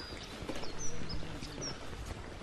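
Small birds chirping a few short high notes, over faint footsteps of walkers on a path and rainy outdoor background noise.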